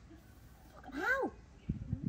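A baby macaque gives one short call, rising then falling in pitch, about a second in. A few dull low thumps follow near the end.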